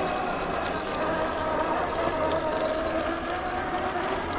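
Electric whine of an RC rock crawler's Hobbywing Fusion SE 1800kv brushless motor and gear drivetrain as it crawls over rocks. The whine is steady and wavers slightly in pitch.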